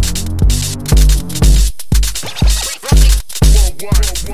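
Live-coded electronic music made in TidalCycles: a deep kick drum about twice a second under bursts of noisy, crackling hiss, the hiss dropping out briefly a little before the middle.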